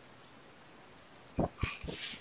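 A cat bumping against the camera and its microphone at close range: three soft knocks about a second and a half in, with a close rustle of fur against the mic.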